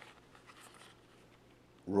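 Near-quiet small room with a few faint handling rustles and clicks, from cardboard or card stock being handled; a man's voice starts near the end.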